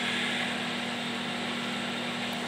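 Over-the-range microwave oven running: a steady hum.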